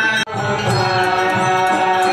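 Hindu aarti hymn: devotional chanting with music, cut off for an instant about a quarter second in, then continuing.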